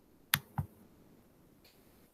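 Two sharp clicks about a quarter of a second apart, followed by a faint tick near the end.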